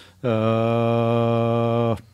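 A man's drawn-out hesitation sound, one vowel held on a single low, steady pitch for nearly two seconds.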